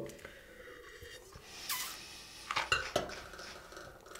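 A wine taster slurping a sip of red wine, a short hissy draw of air through the wine, followed by a few light clinks as the wine glass is set down on a hard tabletop.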